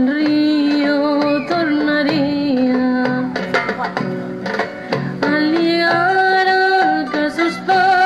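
Live acoustic folk music: a held melody line that slides between long notes, over acoustic guitar, a twelve-string lute and goblet hand drums.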